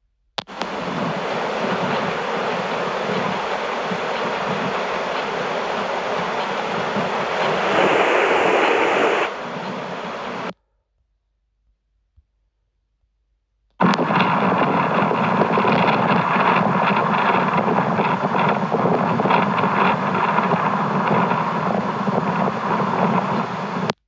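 Playback of two trail-camera clips, each a steady, loud rushing noise lasting about ten seconds that starts and stops abruptly, with about three seconds of silence between them.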